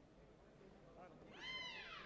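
A high-pitched human shout, rising and then falling in pitch, heard once in the second half and lasting just over half a second, over faint sports-hall background.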